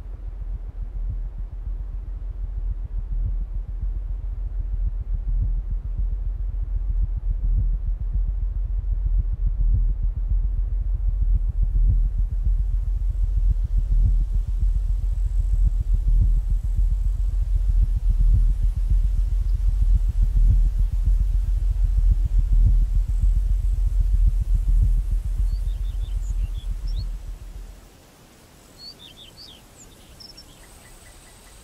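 A deep, low rumble with a soft thud about once a second, swelling gradually and then cutting off suddenly near the end, followed by a few faint bird chirps.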